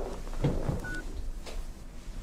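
A mobile phone gives a single short beep about a second in, as the call is ended, over the soft rustle and bumps of the phone being lowered from the ear.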